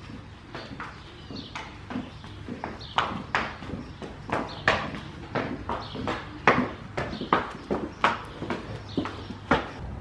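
A Thoroughbred horse's hooves clip-clopping on a concrete barn aisle as it is led at a walk, the hoofbeats sharp and uneven and louder from about three seconds in as the horse comes close.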